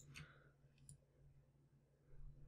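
Near silence with two or three faint computer mouse clicks in the first second.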